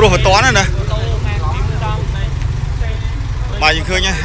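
Several people talking, loudest in the first second and again near the end, over a steady low rumble.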